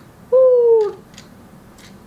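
Interactive Fingerlings baby monkey toy giving one short cooing 'ooh' call that slides down in pitch, lasting just over half a second.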